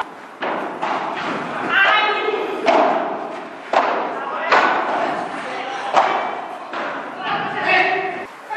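Padel rally: a padel ball is struck by solid rackets and rebounds off the court's glass walls, giving a series of sharp knocks about once a second, each echoing in a large hall.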